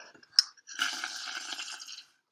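A child blows through a drinking straw into a pot of watery paint and washing-up liquid, making it bubble for over a second. Just before, there is a short click.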